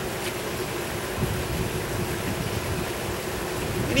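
Steady outdoor background noise: a low, uneven rumble under a faint hiss.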